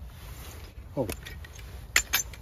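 A sharp metal click near the end as a small metal travel cutlery case is handled, with a faint metallic tick just after a brief spoken "oh" about a second in.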